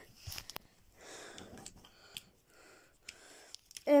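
Quiet handling of a plastic Tigatron action figure on a bed sheet: soft rustling and a few light plastic ticks as it is moved and picked up, with faint breaths close to the microphone.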